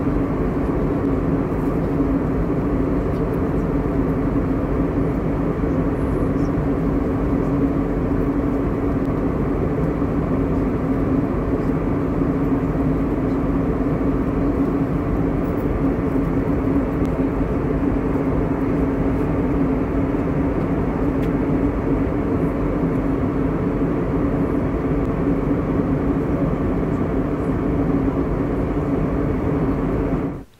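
Steady cabin noise of an airliner in flight: the even rush of engines and airflow with a constant low hum running under it.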